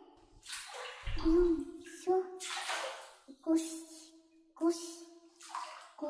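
Bathwater splashing in a series of short bursts, about six in a few seconds, as someone washes in the bath.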